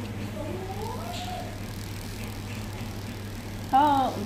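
A soft, wordless vocal sound gliding upward in pitch about half a second in, then a louder voice with a wavering pitch near the end, over a steady low hum.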